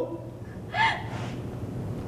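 A single short gasping cry from a badly wounded, dying man about a second in, over a steady low hum.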